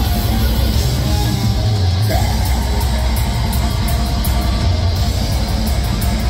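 A live heavy rock band playing loud: distorted electric guitar, bass and drums with cymbal hits, an instrumental stretch with little or no singing.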